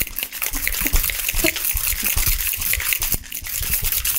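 Metal cocktail shaker shaken hard and fast: a rapid, even rhythm of the Ramos Gin Fizz mix sloshing and slapping inside the tin. The hard shake whips the egg white and cream into the drink's foam.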